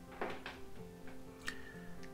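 Quiet background music with soft, held notes. A few light clicks come about a quarter second in and again near the middle, as a hand picks up and handles an aerosol can of furniture polish.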